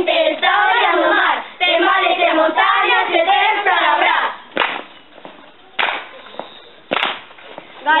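Voices singing a song together for the first half, then a pause broken by three sharp claps about a second apart, with the singing coming back in at the very end.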